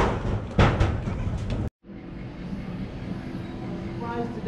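Two heavy thuds on a wooden feeding platform, about half a second apart, with proboscis monkeys at the platform. After a brief dropout, a steady outdoor background noise follows.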